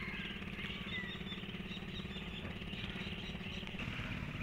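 Faint birds chirping over a steady low background rumble.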